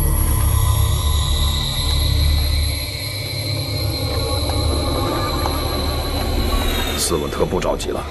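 Suspenseful background score of sustained high drone tones over a low rumble, the low part dropping away about three seconds in. A voice begins near the end.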